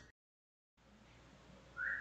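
A break between narrated passages: dead silence, then faint room hiss from the next recording, and a brief rising whistle-like tone just before the voice resumes.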